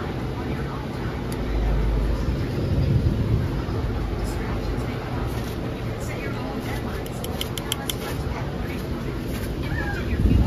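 Steady low rumble with faint voices in the background, and a quick run of light clicks about seven seconds in.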